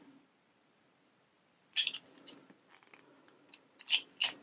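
Shackle of a Brinks dial combination padlock tugged against the locked body. Quiet at first, then a cluster of sharp metallic clicks and rattle about two seconds in, a few lighter clicks, and another sharp click near the end. The lock stays shut: the combination tried is wrong.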